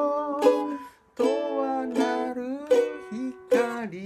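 Acoustic ukulele playing an instrumental passage of plucked chords and melody notes, with a brief stop about a second in before the playing resumes.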